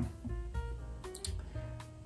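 Soft background music: a plucked string instrument, most likely a guitar, picking out single notes one after another.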